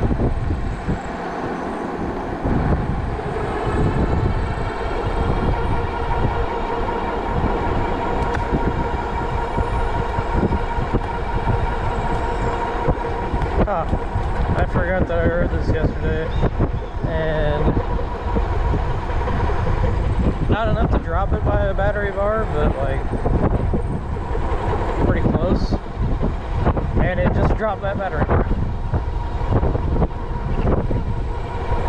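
Wind rushing and buffeting over the microphone on a Juiced Hyperscrambler 2 e-bike riding at a steady 20 mph, with a steady thin whine from the drive running underneath.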